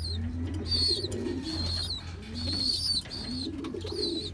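Domestic racing pigeons cooing over and over in a loft, low warbling coos one after another, with a high thin chirp repeating about once a second over a steady low hum.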